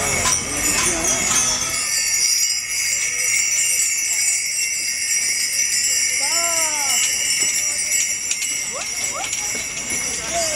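Many small harness bells on the draught animals jingling steadily as the ox-drawn carts and horses move along, with a hubbub of crowd voices. About six seconds in, a single drawn-out call rises and falls.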